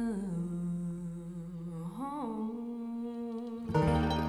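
A voice holding slow, long notes of a country blues melody, sliding down at the start and bending up and back about two seconds in. Near the end the string band's plucked instruments come in together with a strum.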